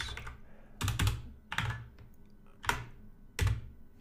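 Computer keyboard typing: a handful of separate, unevenly spaced keystrokes entering a date into a filter field.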